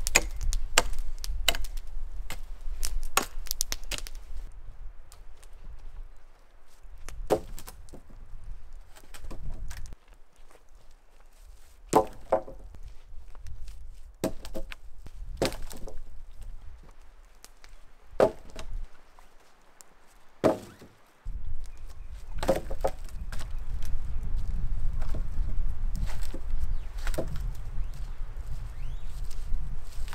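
Small forest axe striking a dead spruce pole, knocking off branch stubs: a quick run of sharp chops in the first few seconds, then single chops and knocks scattered through the rest.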